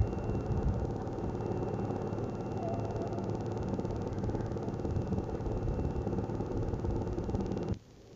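A steady low whir with a faint hum, like a small motor running, cutting off suddenly near the end.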